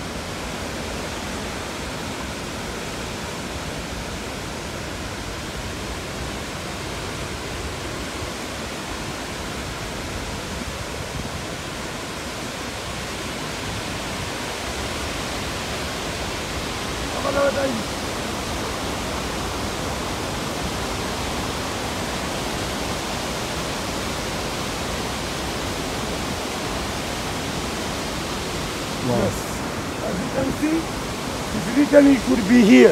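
Steady rush of Fourteen Falls, a wide waterfall of many streams on the Athi River. It grows a little louder in the second half.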